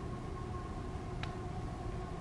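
Steady low background hum with a few faint steady tones running under it, and one short light click just after the middle.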